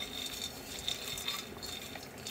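Small peanuts being dry-roasted and stirred with a long stick in a frying pan: faint, scattered clicks and rattles of the nuts and stick against the pan.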